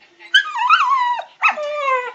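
Puppy vocalizing: two drawn-out, high calls, the first wavering in pitch, the second sliding down.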